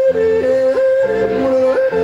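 A man yodeling into a microphone, his voice flipping sharply back and forth between two pitches several times, over amplified zither accompaniment.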